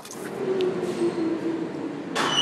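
New York City subway train pulling into the station: a rumble growing louder, with a steady low hum running through it.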